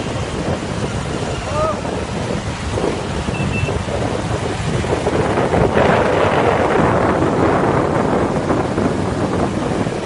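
Road traffic noise from motorcycles and auto-rickshaws, with wind rushing on the microphone of a moving phone camera; it grows louder about six seconds in.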